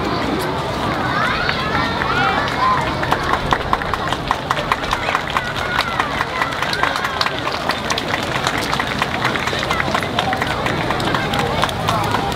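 Hand clapping, scattered at first and thickening from about two seconds in, over crowd voices with high-pitched calls and shouts.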